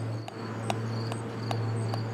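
Crickets chirping in an even rhythm, about two short high chirps a second, over a low steady hum with a few faint clicks.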